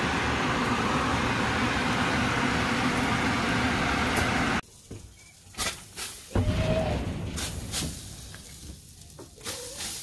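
Onions frying in butter in a covered cast iron skillet: a loud, steady sizzle that cuts off abruptly about four and a half seconds in. After that, quieter sounds with a few short clicks and knocks.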